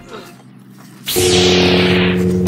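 Lightsaber ignition sound effect about halfway through: a sudden hiss that falls in pitch, then a steady low buzzing hum.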